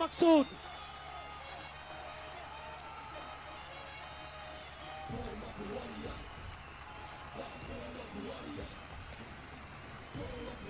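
Fight-arena sound: the ring announcer's drawn-out call ends just after the start, leaving faint background music. About five seconds in, low, muffled men's voices begin talking in the cage.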